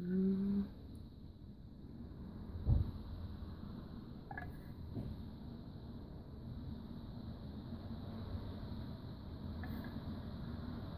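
Soft handling noises of a wooden craft stick scraping acrylic paint out of a cup into small pour cups, with one dull knock a little under three seconds in and a few faint clicks.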